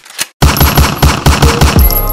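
An edited intro sound effect: a rapid, loud run of heavy thumps, about eight a second, starting about half a second in. Near the end it gives way to a steady deep bass note as music begins.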